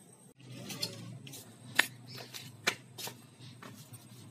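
Handling noise from a phone camera being moved: irregular rustling with a few sharp clicks and taps, the loudest near the middle.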